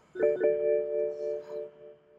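BMW instrument cluster warning chime sounding after the ignition is switched on: a bell-like tone, with a second note joining a moment later, ringing for about a second and a half and fading away.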